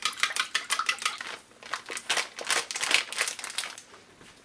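A utensil beating egg and water in a stainless steel bowl, making rapid, irregular clicks and scrapes against the metal.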